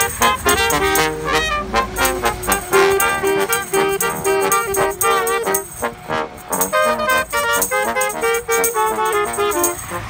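Live brass playing a lively tune: trombone, alto saxophone and trumpet together, with a tambourine shaken on the beat.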